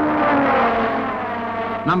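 Formula One racing car engine passing at speed, its note falling in pitch as it goes by.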